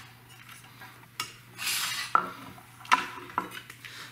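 Metal parts of an aluminium LED flood light housing being handled: a few sharp clinks and a short scrape, over a steady low hum.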